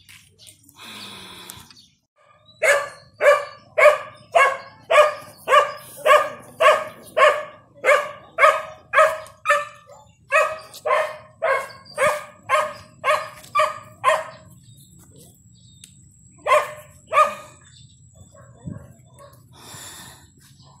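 A dog barking over and over, about two barks a second for roughly twelve seconds, then two more barks a couple of seconds later.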